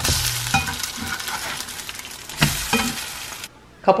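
French toast, bread soaked in egg whites, sizzling in a hot nonstick frying pan, with two knocks about two and a half seconds in. The sizzle cuts off suddenly near the end.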